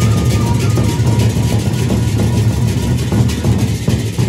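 Gendang beleq ensemble playing loudly: large double-headed barrel drums beaten in a fast, dense rhythm with deep low drum tones, and hand cymbals clashing over them.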